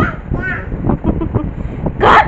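A toddler's short high-pitched squeal or babble, rising and falling once about half a second in, with a few softer vocal sounds and light knocks after it.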